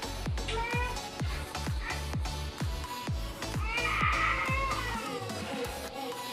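Loud music with a steady kick-drum beat, about two beats a second, and a high wavering melodic line rising around four seconds in; the bass drum drops out shortly after.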